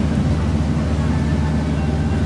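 Ferry's engine running with a steady low drone, heard from on deck while the boat is under way.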